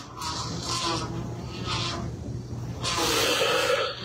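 Rubbing and scraping handling noise on the microphone of a hand-held recording device as it is moved and operated, in uneven rustling stretches over a faint steady low hum.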